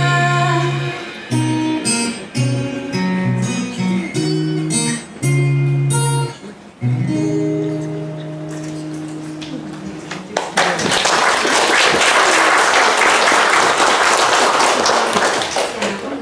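The closing notes of a song on acoustic guitar accompaniment, a string of plucked notes that ends about eight seconds in. Audience applause follows from about ten seconds in.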